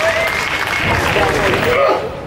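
Ballpark crowd noise: several voices shouting and calling at once, one call held for about a second, over a haze of clapping. It cuts off abruptly near the end.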